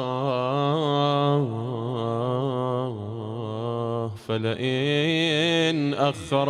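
A man chanting Arabic in a slow, melodic religious recitation, holding long wavering notes, with a brief pause for breath a little past four seconds in.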